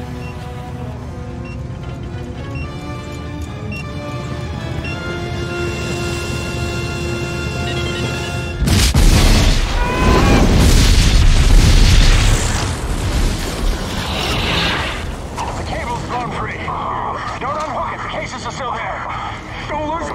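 Action-film soundtrack: a tense orchestral score of held, climbing notes, then a sudden loud explosion about eight or nine seconds in. The explosion is a deep boom and roar of fire that lasts several seconds before dying down, with the music carrying on under it.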